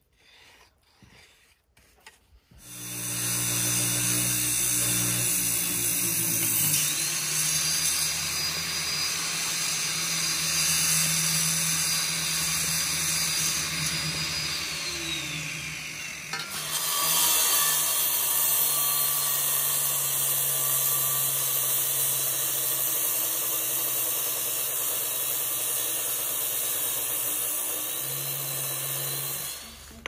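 Electric wet tile saw cutting concrete pavers. It starts about two and a half seconds in and runs steadily with a constant hum and a bright hiss, dips briefly about halfway, then stops just before the end.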